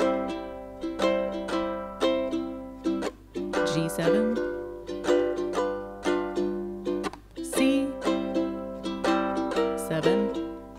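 Ukulele strummed in a steady rhythmic pattern, playing a chord progression that begins on G7.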